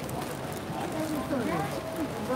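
Voices talking indistinctly over a steady hum, the talk strongest near the end.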